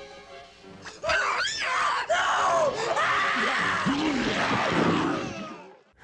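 Horror-film soundtrack: quiet, steady music, then about a second in loud screaming over the music for roughly four seconds, fading away just before the end. It is a victim's screams during a monster attack.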